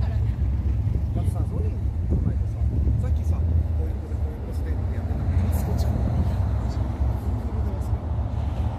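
Steady low rumble of car engines idling among parked cars, with people talking over it.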